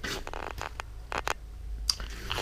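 Foam insulation boards being handled against a van's sheet-metal door panel: a short scrape, then several separate sharp clicks, the last near the end.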